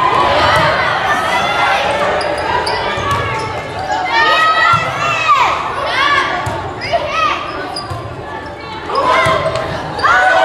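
Volleyball rally on a hardwood gym court: sneakers squeaking in short, high rising-and-falling chirps as players move, the ball being struck, and voices echoing in the hall.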